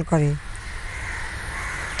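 A woman's speaking voice stops about half a second in, leaving outdoor background with crows cawing.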